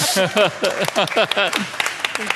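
A small audience clapping unevenly, with voices calling out and laughing over the claps.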